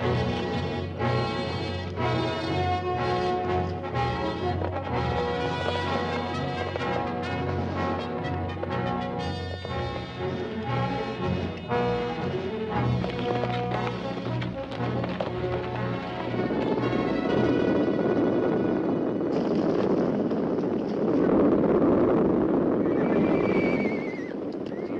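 Orchestral western film score, joined about two-thirds of the way in by the rumble of a herd of horses galloping, which grows louder toward the end.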